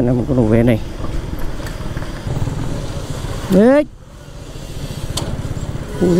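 Motorcycle engine running at low road speed with an even low pulse. A short rising voice call comes about three and a half seconds in, and right after it the engine note drops away as the throttle is eased off.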